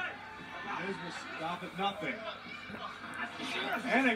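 Wrestling television broadcast playing in the room at low level: a commentator talking steadily, with music underneath.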